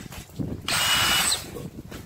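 Cordless drill's motor spun up briefly on the trigger, one burst of under a second near the middle, with a high whine over the motor's noise.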